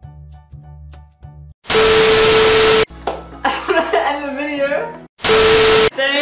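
Soft background music of repeated plucked notes over a bass line, cut off about one and a half seconds in by a loud burst of static-like noise with a steady tone running through it. A voice then talks briefly over faint music, and a second, shorter static burst comes near the end.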